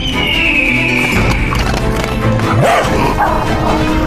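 Background music with a high tone sliding downward at the start, and a dog barking a few times a little past the middle.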